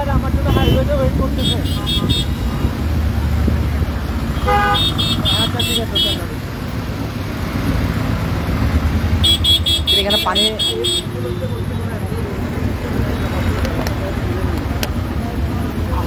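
Jammed highway traffic: vehicle engines running with a steady low rumble, while horns sound several bursts of rapid, high-pitched beeps, the longest near the middle.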